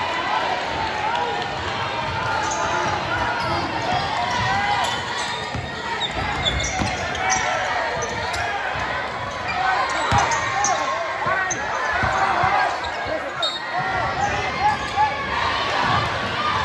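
Basketball game in a gym: many short sneaker squeaks on the hardwood court and a few ball bounces, over crowd chatter.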